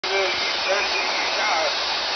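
Weak FM radio transmission on 29.750 MHz heard through a web SDR receiver: steady loud hiss with a faint voice talking underneath it, fishing-boat radio chatter barely above the noise.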